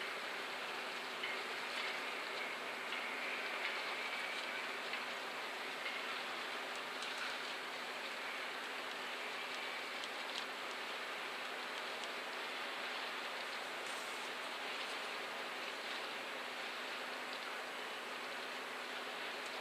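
Steady outdoor background noise: an even hiss with a faint low hum underneath and a few faint ticks.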